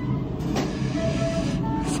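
Steady background noise of a restaurant dining room, with a few short faint tones.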